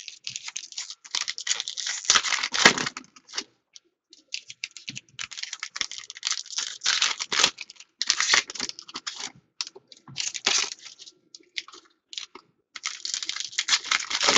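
Foil trading-card pack wrappers being torn open and crinkled, a dry crackling rustle that comes in several bursts separated by short pauses.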